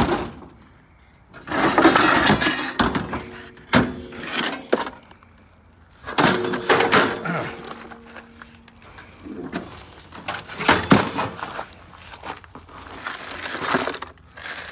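Scrap metal pieces clattering and clanking as they are handled and dropped, in about eight separate bursts. Some pieces ring on briefly after being struck.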